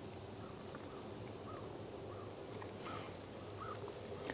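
Faint outdoor ambience with a bird giving a few short, soft calls, about five of them in the second half, over a low steady background hum.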